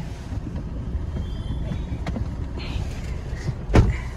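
Car interior noise while driving slowly: a steady low engine and road rumble, with one sharp knock near the end.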